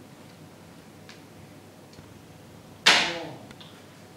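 A single sharp knock or slap about three seconds in, loud and sudden, ringing away over about half a second.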